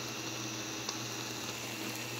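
Coconut-milk broth with fish and greens simmering in a wok, a steady bubbling hiss.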